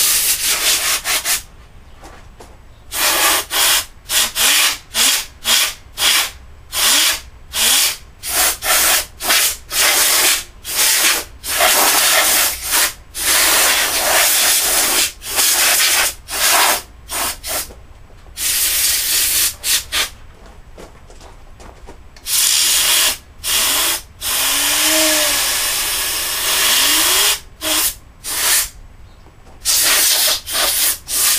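Compressed-air blow gun blasting dust out of a desktop computer case in many short bursts, a few held for a second or two, with quieter gaps between.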